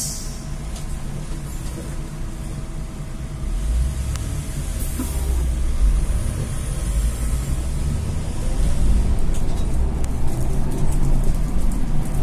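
Solaris Trollino II 15 AC trolleybus heard from inside near the front, pulling away and picking up speed. A deep rumble from the running gear and body builds from a few seconds in and is loudest near the end, with light clicks and rattles.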